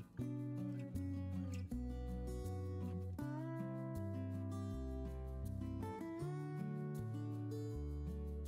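Quiet background music led by guitar, over a bass line that steps from note to note.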